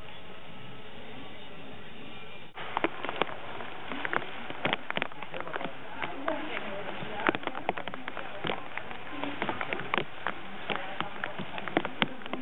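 Handling noise from building work with bricks and a plastic sheet: after an abrupt cut about two and a half seconds in, many irregular sharp clicks, clinks and crackles.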